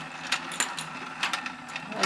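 Battery-powered Let's Go Fishin' toy game running: its small motor turns the plastic pond with a faint low hum, while light plastic clicks and rattles come at irregular moments. The batteries are almost dead.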